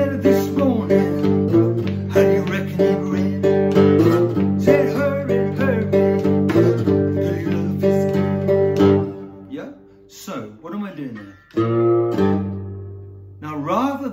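Cigar box guitar played with a slide: a steady, driving blues rhythm on the low strings, with a man's singing over it. About nine seconds in, the rhythm breaks off into a few quieter sliding notes, then picks up again near the end.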